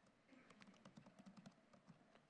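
Laptop keyboard typing: a quick run of about a dozen faint key clicks, starting shortly after the beginning and ending near the end.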